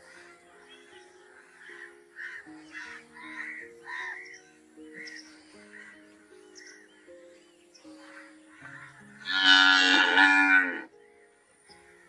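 A cow moos once, a loud, long call of about two seconds near the end, over soft background music.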